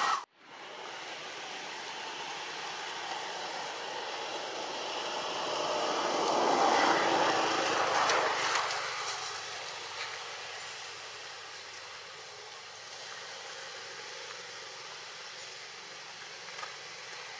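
Steady outdoor background hiss that swells to its loudest about six to eight seconds in, then eases off, with a brief dropout just after the start.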